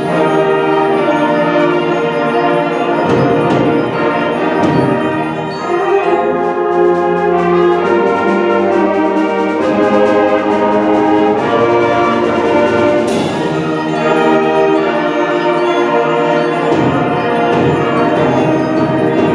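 High school concert band playing with full, sustained brass and woodwind chords. A sharp struck accent rings out about two thirds of the way through.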